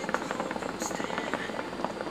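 Hookah water bubbling in a rapid, fluttering gurgle as the smoker draws on the hose.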